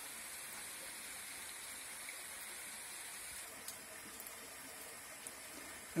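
Faint, steady rush of a stream's water running over a rock slab, with no break or change beyond a high hiss easing slightly past the middle.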